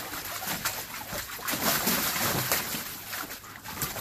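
German Shepherd splashing and pawing at the water in a plastic kiddie pool, with irregular splashes and sloshing as it moves through and out of the pool.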